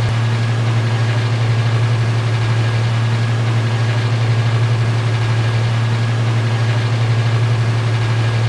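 Cruise boat's engine running steadily, heard on board as a low, even drone.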